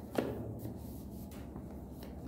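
Hands handling a boxed product's packaging: a sharp tap about a fifth of a second in, then faint rustling and scraping.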